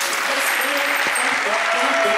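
Studio audience applauding steadily. A musical jingle starts to come in near the end, with held notes.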